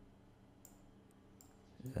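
A few faint computer mouse clicks, about half a second and a second and a half in, over a low steady hum.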